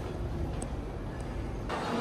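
Low steady rumble of street traffic ambience. Near the end it cuts abruptly to a brighter murmur of crowd chatter.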